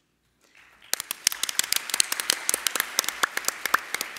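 Audience applauding, starting about a second in.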